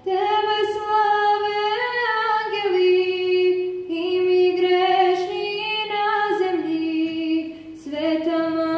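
A girl's solo voice singing slow, long-held notes without accompaniment, in two phrases with a breath about four seconds in.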